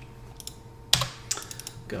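Computer mouse clicking on a desktop shortcut: one sharp click about a second in, then a few lighter clicks.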